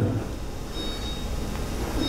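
Room tone in a pause between speech: a steady low hum with faint hiss, with no distinct events.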